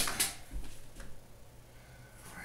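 Cardboard shoe boxes being handled on a wooden table: two sharp knocks right at the start, then a few fainter bumps and rustles.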